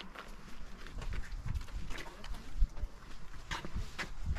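Wind buffeting the microphone in uneven low rumbles, strongest in the middle, with a few light knocks.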